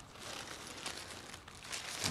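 Faint crackly rustling of dry leaves and pine needles as a hand moves over them, a scatter of small ticks that grows a little busier near the end.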